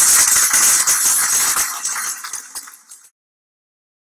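Audience applauding, fading from about two seconds in, then cut off suddenly at about three seconds.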